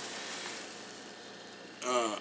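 Low, even hiss of room noise that fades gradually, then a man's voice begins a word near the end.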